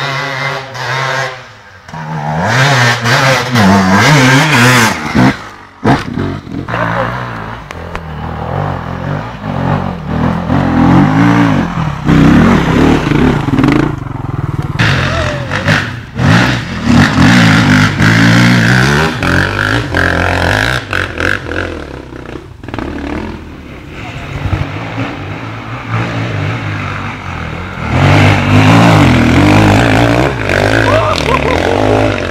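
Off-road dirt bike engines revving up and down again and again. The pitch keeps rising and falling with the throttle.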